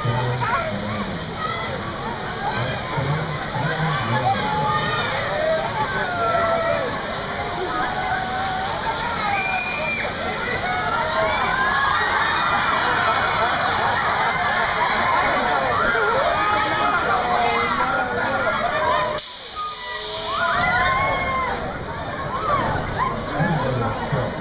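Many riders screaming and shouting on a swinging, flipping thrill-ride gondola, over the steady rush and splash of water fountains spraying up beneath it. The screaming is heaviest in the middle and drops away suddenly for a moment near the end.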